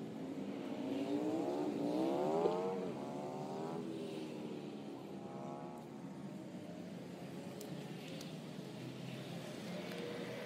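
A vehicle accelerating: its pitch rises for about two seconds, drops suddenly near three seconds in like a gear change, climbs again, then settles into a quieter steady running sound. A few faint clicks come near the end.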